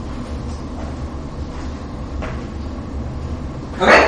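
Steady low hum of room noise in a lecture room, with one short, loud noise near the end.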